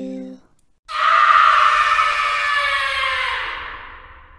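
A woman's long horror-effect scream that starts abruptly about a second in, slides slowly down in pitch and fades away near the end, over a faint low rumble. Before it, the last note of a softly sung lullaby dies away.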